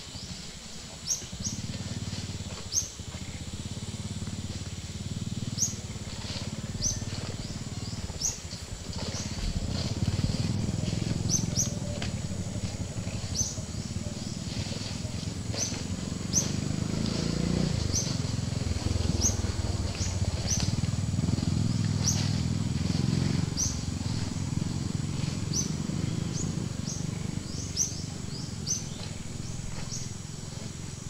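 A bird repeats a short, high, falling chirp every second or so. Under it run a steady high whine and a low rumble that is louder through the middle.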